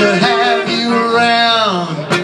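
A man singing with an acoustic guitar, holding one long note that slides down in pitch near the end.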